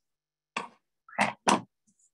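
Scissors snipping the tip of a plastic piping bag and being set down on a wooden tabletop: three short knocks, the last two loudest and close together.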